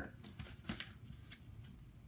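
Faint rustle and a few soft clicks of a picture book's page being turned by hand.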